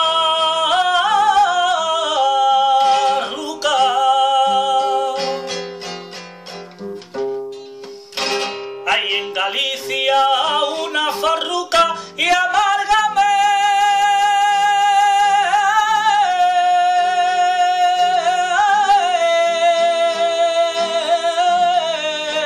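A man singing a flamenco farruca in long, held, wavering notes, accompanying himself on a Spanish guitar. From about five to twelve seconds in the voice stops and the guitar plays alone, ending that passage with sharp strummed strokes before the singing comes back in.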